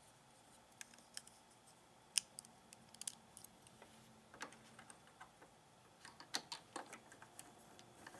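Faint, irregular clicks and taps of plastic LEGO pieces being handled and fitted back into place on a model truck, thickest around two to three seconds in and again near six to seven seconds.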